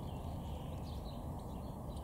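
Faint songbird chirps and trills coming and going over a steady low background rumble.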